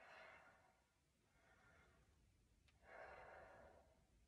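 Near silence, broken by two faint exhaled breaths from a person exercising, one at the very start and one about three seconds in.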